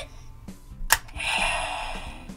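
A Power Morpher toy replica clicks sharply once as it is snapped open. About a quarter-second later its speaker starts a hissing electronic morph sound effect that fades slightly.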